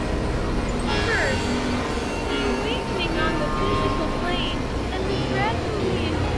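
Experimental electronic noise music from synthesizers: a steady low drone under many short chirping pitch glides that sweep up and down.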